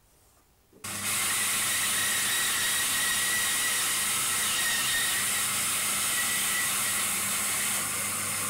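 Bandsaw running and cutting a curve through the corner of a softwood fence board, starting about a second in and going on steadily with a low motor hum beneath it. The cut rounds off the corner along a pencilled line.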